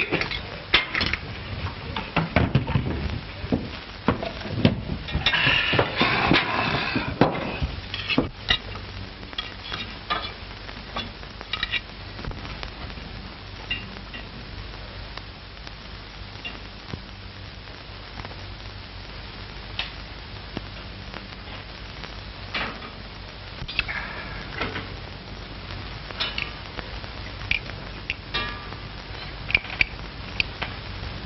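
Plates, cups and cutlery clinking and clattering as a table is set and a meal eaten, busiest in the first several seconds, then as scattered single clinks over the steady hiss and hum of an old film soundtrack.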